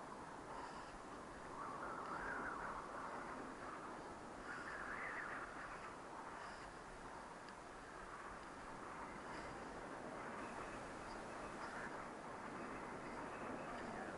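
Steady rushing wind on the microphone, with faint crunches of steps in snow.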